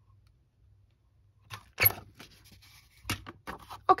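A metal hand-held hole punch clicks sharply about two seconds in, followed by another sharp metallic click and light rattling and paper handling near the end.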